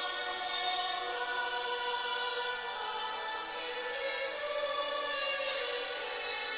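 Sacred choral music: a choir singing sustained, slowly shifting chords.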